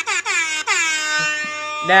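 Air horn sound effect blasted in quick short bursts, each dipping in pitch as it starts, then held in one long blast that cuts off just before a voice resumes.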